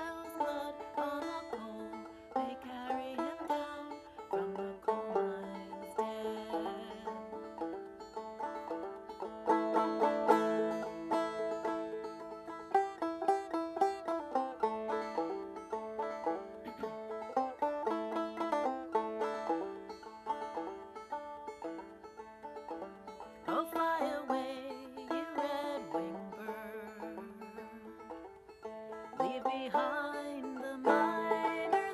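Banjo played with a run of plucked notes between sung verses of a folk song, with a woman's singing voice returning near the end.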